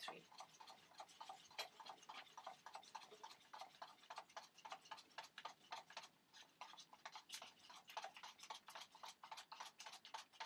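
Plastic fork stirring two-part epoxy resin and hardener in a plastic cup, tapping against the cup's sides in a faint, quick, steady run of soft clicks, several a second: the resin is being mixed thoroughly so that it will cure.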